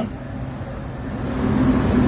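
A low outdoor rumble that grows steadily louder over the second half.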